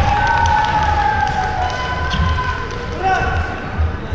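A long drawn-out shouted voice ringing in a large sports hall, followed by a shorter call and another near the end, over repeated dull low thuds.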